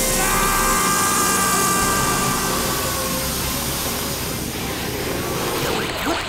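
Steady rushing wind noise with a background music score under it, easing off slightly near the end.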